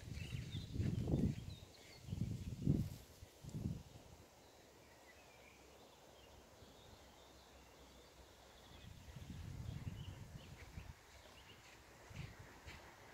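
Quiet outdoor ambience: a few low rumbles in the first four seconds and again about nine seconds in, with faint high bird chirps in between.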